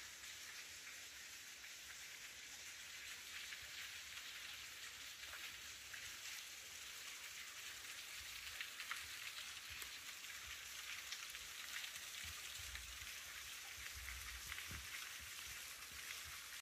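Faint, steady splashing hiss of a small waterfall spilling into a rock gorge, its patter of droplets growing slightly louder over the stretch. A few soft low bumps come near the end.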